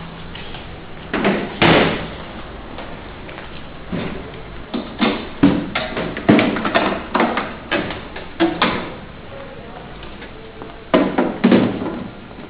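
Knocks and clunks of a tempered-glass tabletop and its metal frame being handled and turned over: a string of sharp separate impacts, two about a second in, a quick run in the middle, and two more near the end.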